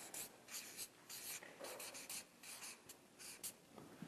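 Marker pen writing on flip-chart paper: a quick run of short, faint scratchy strokes as a word is written out.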